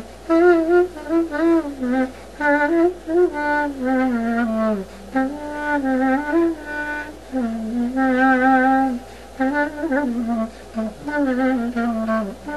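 Solo clarinet (klarino) playing an ornamented melody in short phrases, with a fast vibrato made by small movements and pressure of the lips on the mouthpiece, in the Greek Roma style.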